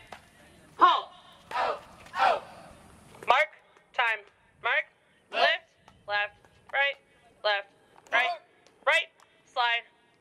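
A voice shouting marching drill counts in a steady march tempo: short, evenly spaced calls, about three every two seconds.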